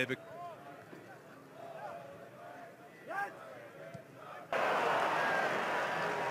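Football match sound: a quiet stretch with a few faint shouts from players, then an abrupt jump about four and a half seconds in to loud, steady crowd noise from the stands.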